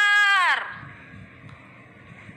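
A high voice holds one long, steady note, then slides down in pitch and dies away about half a second in, leaving a faint low murmur.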